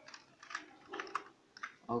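Computer keyboard keys being pressed: about half a dozen short, separate clicks, fairly quiet.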